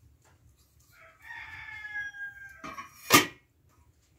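A rooster crowing once: a single call of about a second and a half that falls slightly in pitch, followed about three seconds in by a sharp knock.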